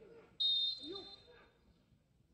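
Referee's whistle: one shrill blast about half a second in, held for about a second and trailing off, signalling the free kick to be taken.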